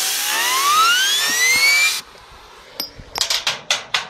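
Compressed air from an air compressor hissing hard, with a whine that climbs steadily in pitch as the jet spins a homemade bearing-mounted fidget spinner up to speed. The hiss and the whine stop together about two seconds in, followed by a few light clicks and knocks.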